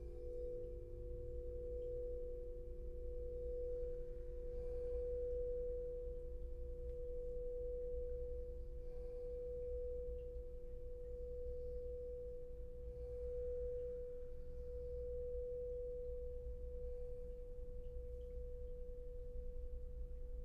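Crystal singing bowl ringing one sustained pure tone as it is rimmed, swelling and easing in slow waves about every two seconds. Two fainter, lower bowl tones die away in the first few seconds.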